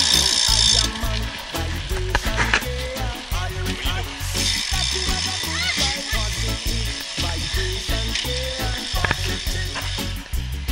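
Wind buffeting the microphone of a camera on a moving road bike, a choppy rumble with hiss from the ride. The hiss is loud at first and drops sharply about a second in.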